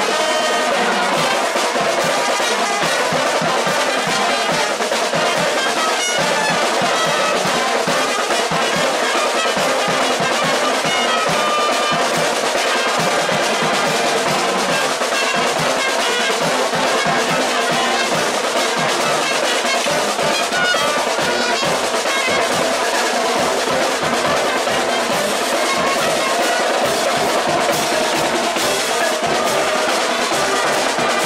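A marching band playing live: trumpets and trombones carry the tune over snare and bass drums and cymbals, at a steady level throughout.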